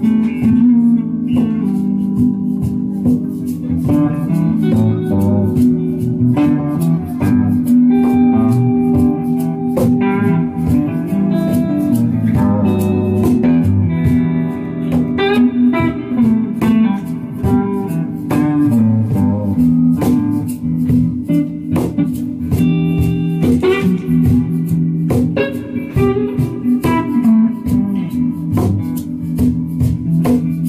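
Live blues-tinged instrumental: an electric guitar plays a melodic lead over a sustained low accompaniment, with percussion clicking steadily throughout.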